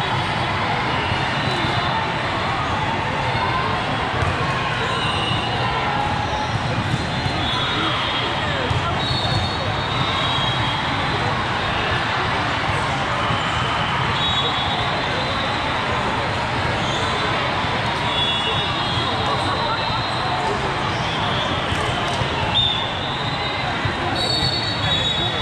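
Steady din of a large hall full of volleyball courts: many people talking at once, balls bouncing and being struck, and short high squeaks coming again and again throughout.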